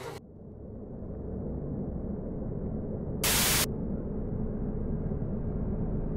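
A low, dark drone swells in after an abrupt cut. About three seconds in, a short, loud burst of TV-style static hiss lasts under half a second.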